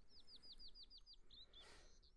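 Faint bird chirping: a quick trill of about eight short, falling chirps in the first second or so, then a brief soft rustle near the end.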